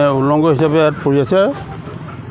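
A man speaking in short phrases for about a second and a half, followed by a pause filled with steady background noise.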